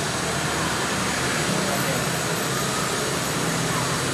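Steady urban background noise with a constant low hum and indistinct voices mixed in.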